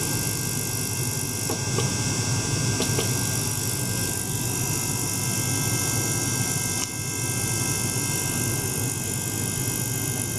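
Ultrasonic cleaning bath driven through clamped ultrasonic probes, running with a steady buzzing hiss and several thin steady whining tones over it. Briefly dips about seven seconds in, as the oscillation changes.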